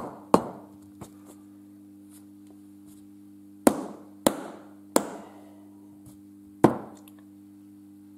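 Small steel diesel injector parts set down and knocked together on a workbench: about six short, sharp metallic clicks and knocks, spaced irregularly, over a steady low hum.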